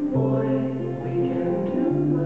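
Live music: an acoustic guitar with sustained chords held under it and a steady low note that shifts pitch near the end.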